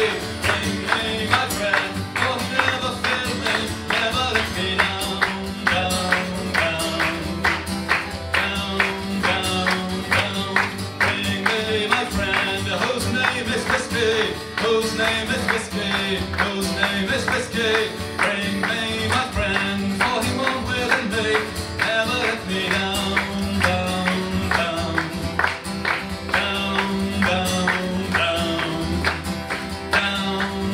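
Steel-string acoustic guitar strummed hard in a steady, driving rhythm, playing a folk song.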